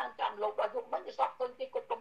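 A woman talking continuously, heard through a phone's speaker on a video call.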